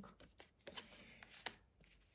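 Faint handling of tarot cards: soft sliding and a few light clicks as cards are set down and picked up, the sharpest click about one and a half seconds in.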